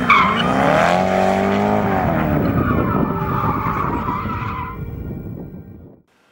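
Koenigsegg supercar's V8 engine being driven hard, its note rising about half a second in and falling away after two seconds, with tyres squealing on tarmac. The sound fades out near the end.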